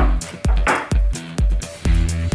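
Upbeat dance-style background music with a steady beat of about two kick drums a second over a bass line.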